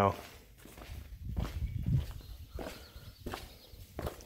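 Footsteps walking over gravel and onto a concrete slab: a string of irregular, fairly quiet crunches and scuffs.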